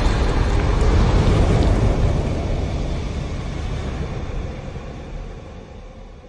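Sound effect of a fiery animated logo intro: a deep, rumbling rush of noise that slowly fades away over several seconds.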